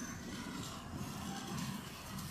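Steady rain falling on a street: an even hiss with a low, uneven rumble beneath it.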